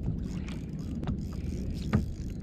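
Water slapping against a fishing kayak's hull over a low steady rumble, with two sharp knocks, the louder one near the end.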